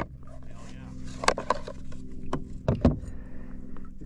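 A boat motor drones steadily at an even pitch. Several sharp knocks and clicks come over it as a caught redfish and the lure in its mouth are handled in a kayak.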